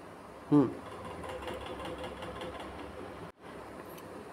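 A man's brief 'hmm', then a faint, steady mechanical whir with a faint even hum, broken by a moment of dead silence near the end.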